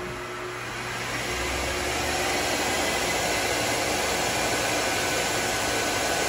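Treadmill DC motor driving a metal lathe spindle, speeding up over the first couple of seconds as the coarse speed control is turned up, then running steadily at about 1550 rpm, full speed.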